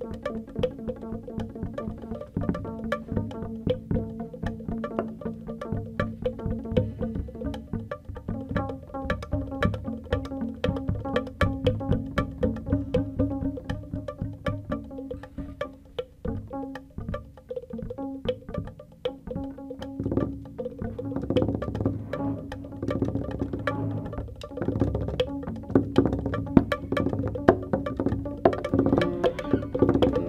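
Live improvised jazz trio music led by double bass, plucked and bowed, over a stream of light percussion strikes; the playing grows louder and denser about two-thirds of the way through.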